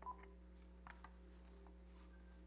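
Near silence: room tone with a low steady hum, broken just after the start by one short electronic beep and, about a second in, a few faint clicks.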